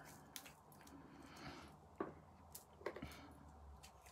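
Near silence with faint handling of a liquid eyeshadow tube: a soft squishy sound and two small clicks, about two and three seconds in.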